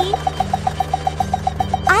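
Cartoon machine sound effect for a toy truck with a roller: an even, rapid ticking at about nine ticks a second over a low steady hum.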